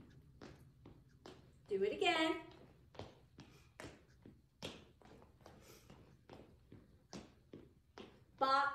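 Footsteps of two women stepping through a dance routine on a hardwood floor: short, evenly spaced taps, about two a second. A brief voice sounds about two seconds in.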